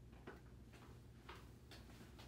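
Near silence with a few faint, irregular ticks: shoes stepping on a tile floor.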